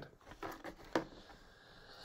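A few faint, short clicks of small plastic model-kit parts being handled, in the first second.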